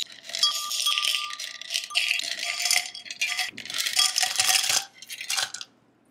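Ice cubes poured into a tall glass, a dense clinking clatter of cubes hitting the glass and each other, with the glass ringing in a clear tone underneath. It comes in a few runs and stops shortly before the end.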